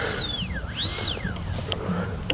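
Twin 70 mm electric ducted fans of an FMS A-10 Thunderbolt II RC jet whining at low power: the pitch slides down, then briefly rises and falls again about a second in, as with a short blip of the throttle.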